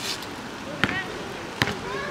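A basketball bouncing twice on an asphalt court, about a second in and again near the end.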